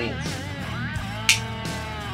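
Background guitar music, with a single sharp click a little past halfway as a pocket knife is snapped open.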